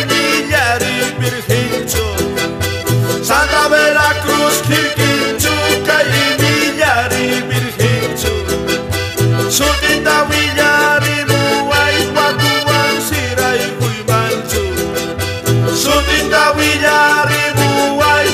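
Instrumental passage of a Bolivian Santa Vera Cruz copla: piano accordion playing the melody over strummed charango and guitar, with a steady pulsing bass beat.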